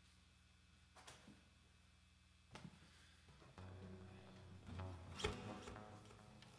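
Faint low hum with a soft click, then from a little past halfway an acoustic guitar being picked up and handled: its open strings ring softly and its wooden body knocks.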